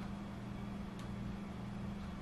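Steady low background hum, with one faint click about a second in.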